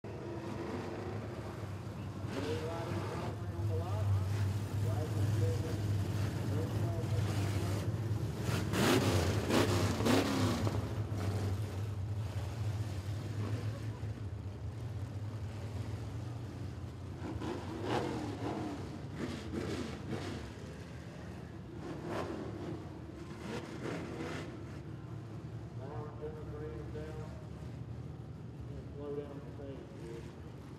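A field of dirt-track street stock race cars running as a pack, a steady low engine drone. Indistinct voices sound over it, loudest about a third of the way in.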